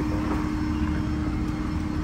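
A vehicle engine idling: a steady low drone with a constant hum that does not change.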